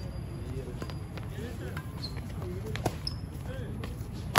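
Badminton rackets hitting a shuttlecock in a doubles rally: a few sharp hits about a second apart, the sharpest near three seconds in. Voices talk in the background over a steady low rumble.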